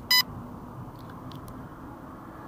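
A single short, high electronic beep, loud over a steady background of street traffic.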